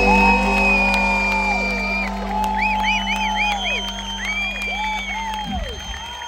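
A live band's final sustained chord rings out and cuts off sharply about five and a half seconds in. Over it the crowd cheers, whoops and whistles: one long held whistle, then a quick run of short whistles.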